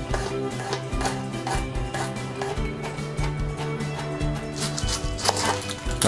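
Chef's knife mincing garlic on a wooden cutting board: a run of quick, repeated knife taps against the wood, under steady background music.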